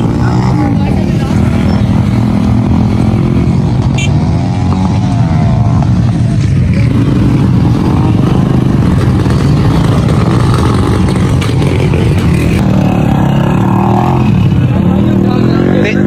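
Several small single-cylinder motorcycles running together at idle in a crowd, a steady loud engine drone, with men's voices over it.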